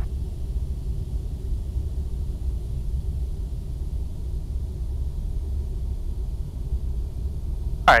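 Steady low cabin rumble of a Cessna 172SP in a power-off glide on approach, its engine throttled back to idle for a simulated engine failure, with airflow over the airframe.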